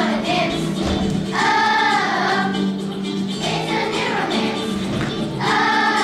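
A fourth-grade children's choir singing in unison, held notes in phrases of a second or two, over a steady accompaniment.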